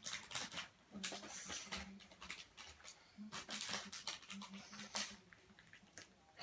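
A blind-bag packet crinkling and rustling in irregular bursts as a child struggles to tear it open, with several short low grunts of effort.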